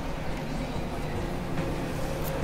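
Steady low rumbling ambience with faint sustained tones underneath, part of an electronic mallsoft sound collage.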